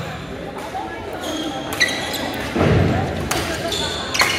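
Badminton doubles rally on a hardwood gym floor: sharp racket hits on the shuttlecock and short sneaker squeaks, with a louder, deeper burst of noise about two and a half seconds in. Voices from players and neighbouring courts run underneath.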